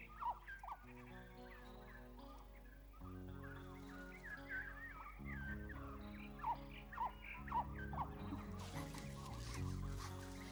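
Soft background music of slow held chords, with short bird chirps and twittering calls scattered over it, thickest through the middle.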